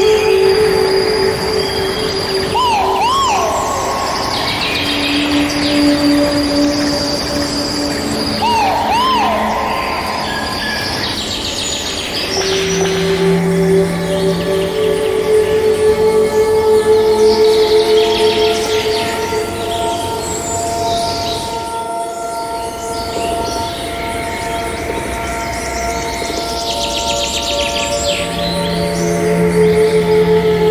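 Slow ambient music of long held notes with birdsong mixed over it: chirps and trills throughout, and a repeated arching, looping call about three seconds in and again about nine seconds in.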